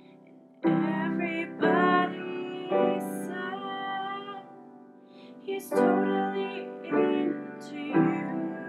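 A woman singing a slow song over piano chords, in phrases of a second or so, starting about half a second in after a brief quiet moment.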